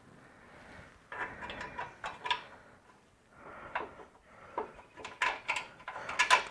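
Quiet scraping and clicking of a stainless steel fog light bracket being worked into line behind a plastic front bumper while its bolts are started by hand, in a few short spells.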